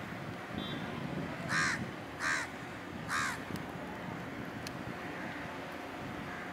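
A crow cawing three times, short harsh calls a little under a second apart, over a steady low rumble.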